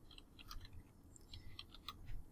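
Faint keystrokes on a computer keyboard: a handful of scattered clicks as a command is typed.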